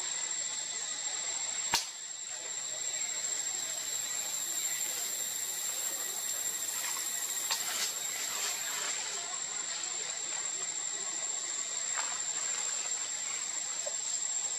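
Steady outdoor hiss with a continuous high-pitched whine, broken by a sharp click about two seconds in and a few fainter clicks later.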